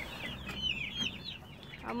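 Many newly hatched chicks peeping, an overlapping chatter of short, high, downward chirps that thins out in the second half.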